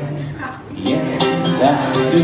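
Acoustic guitar played live: a held chord dies away, then picked notes begin about a second in, opening the song's intro.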